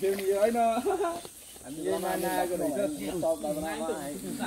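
A person's voice talking, in two stretches with a short pause about a second in, over a faint steady high hiss.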